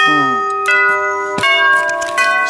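Household wired doorbell chime struck three times, at the start, about two-thirds of a second in and about a second and a half in, each strike ringing on with the notes changing between strikes. It is rung by hand, by touching the front door push-button wires together.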